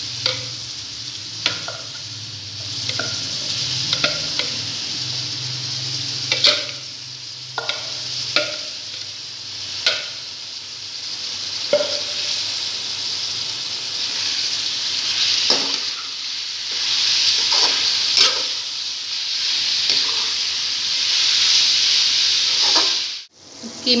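Raw chicken mince frying in oil in an aluminium karahi, sizzling steadily, while a metal spoon stirs and scrapes it with irregular sharp clacks against the pan. The sound drops out abruptly for a moment near the end.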